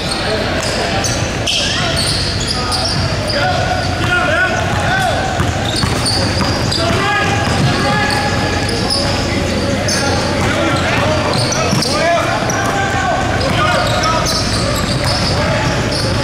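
A basketball being dribbled on a hardwood gym floor, with sneakers squeaking and players and spectators calling out and talking, all echoing in a large gym.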